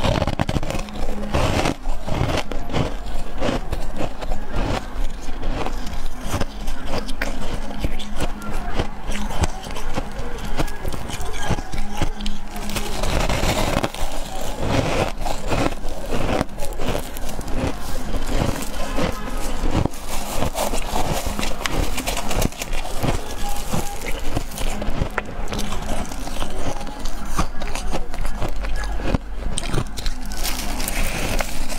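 Soft freezer frost being bitten and chewed close to the microphone: a dense, irregular run of crisp crunches and crackles one after another.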